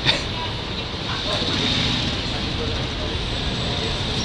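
City street noise: a steady traffic hum with voices in the background, and one sharp knock just at the start.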